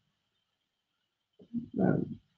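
Near silence, then about one and a half seconds in, a woman's voice makes a short drawn-out hesitation sound.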